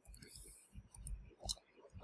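Faint, scattered computer keyboard key clicks, one a little louder about a second and a half in.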